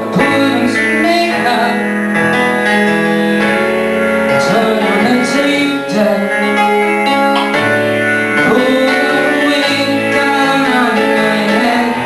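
Live rock band playing, led by a strummed guitar, with a voice singing over it.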